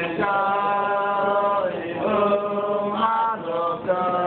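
Men chanting a slow melody in long held notes, with short breaths between phrases.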